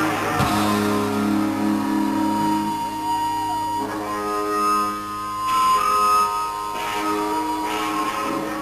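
Live rock band in an instrumental stretch between sung lines: electric guitars hold sustained, ringing chords over bass, with one note bending up and back down about three seconds in.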